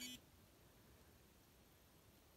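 A short electronic beep from a Polar Grit X sports watch right at the start, as its training recording ends; after that, near silence.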